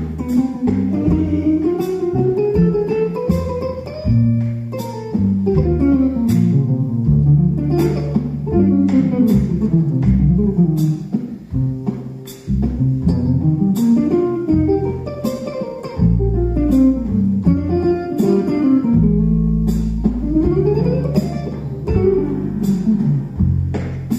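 Jazz guitar solo on a hollow-body archtop electric guitar: quick single-note runs climbing and falling. Upright bass plays low notes underneath, and drums keep time with regular cymbal strikes.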